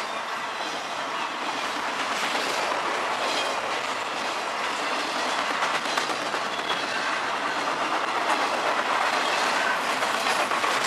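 CSX double-stack intermodal freight train rolling past, its well cars making a steady rumbling rattle with a stream of clicks from the wheels crossing rail joints.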